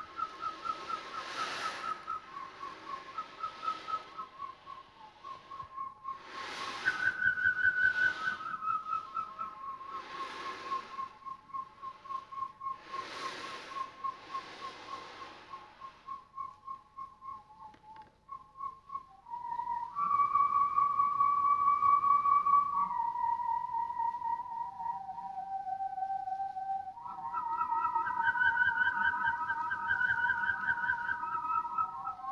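Corrugated plastic whirly tubes swung in circles, singing whistle-like tones that step up and down between notes. Whooshes of air come through several times in the first half, and near the end two tubes sound together, giving two or more notes at once.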